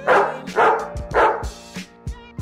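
Three loud dog barks about half a second apart over background hip-hop music.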